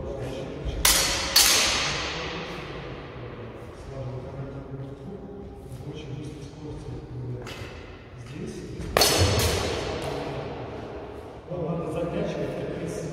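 Steel training sabres clashing blade on blade in sparring: two sharp, ringing clashes about half a second apart roughly a second in, and two more near nine seconds, each ringing out with a long echo in a large hall.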